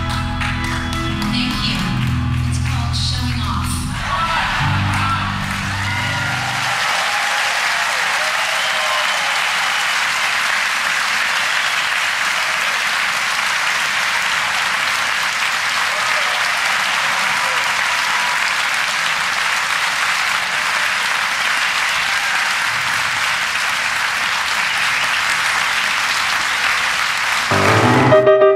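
A live piano song with band backing ends a few seconds in, and a large audience applauds steadily for about twenty seconds.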